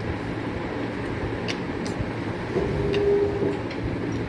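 Steady low background hum with a few faint clicks, and a brief steady tone lasting about a second near the three-second mark.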